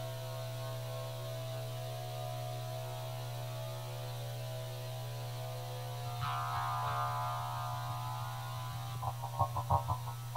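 Steady low electrical hum from an amplified electronics rig, with a faint held tone above it. About six seconds in a higher buzzing tone joins, and near the end comes a quick run of short blips.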